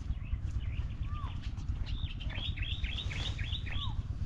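Birds calling: a quick run of about eight down-slurred chirps in the second half, and a separate short arched whistle about a second in and again near the end, over a steady low rumble.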